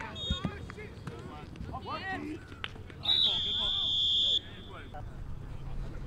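Players shouting on a flag football field. About three seconds in, a single loud, steady whistle blast lasts a little over a second and is the loudest sound.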